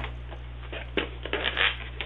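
Clear plastic puzzle-cube cases being handled and lifted out of a cardboard shipping box: a few short rustles and knocks, the loudest about a second and a half in.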